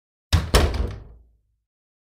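Intro sound effect: two heavy impact hits about a quarter second apart, then a low boom that dies away over about a second.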